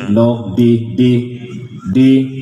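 A man's voice doing a microphone check through a PA sound system, chanting drawn-out test syllables "lo, di, di" one after another in a sing-song way.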